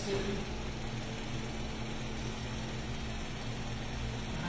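Steady low mechanical hum of a machine running in the room, even and unbroken.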